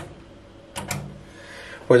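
A quick double click from the extractor hood's light switch being pressed, turning off the newly fitted bulbs.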